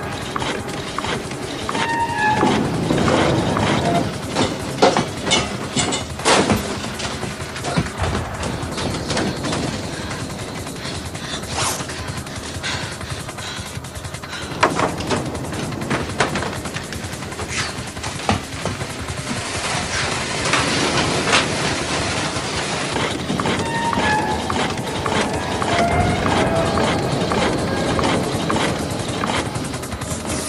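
Film soundtrack: tense score music mixed with mechanical rumbling and occasional sharp metallic strikes.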